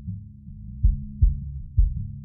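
A song's mix played through a mix-bus EQ that cuts everything above about 200 Hz, leaving only the kick drum and bass: three kick drum thumps over a sustained bass line. The bass is being brought up in level to set the balance of the low end.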